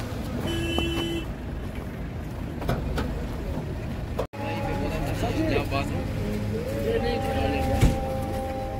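Vehicle engines idling in a stopped line of traffic, a steady low rumble, with a short car-horn toot about half a second in. After a brief dropout in the middle, people's voices and a held two-note horn start near the end.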